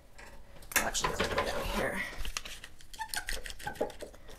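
A clamp being fitted onto a plywood frame piece and tightened: a series of light clicks and knocks of metal on wood, quickening into a run of sharp clicks near the end.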